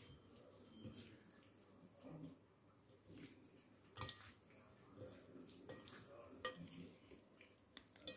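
Faint scattered taps and wet scrapes of two plastic forks tossing a dressed beet salad on a plate, about one soft click a second.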